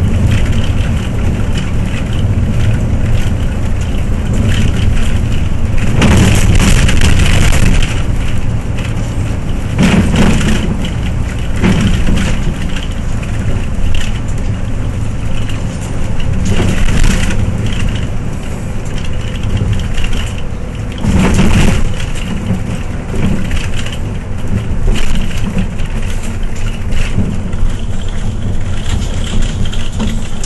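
Cabin sound of a Hyundai New Super Aerocity city bus on the move: steady engine and road noise. Louder bursts of rattling come through several times, the longest about six seconds in.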